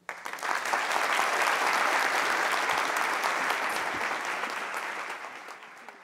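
Audience applauding: the clapping starts at once, is at full strength within about a second, and fades away over the last couple of seconds.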